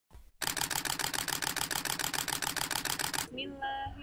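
A rapid, even mechanical clatter of about ten clicks a second runs for about three seconds and then stops abruptly. Near the end a voice begins a held, chanted phrase.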